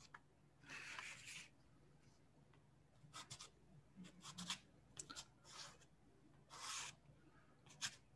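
Faint scratchy strokes of a soft pastel stick rubbed across paper: one longer stroke about a second in, then a run of short strokes.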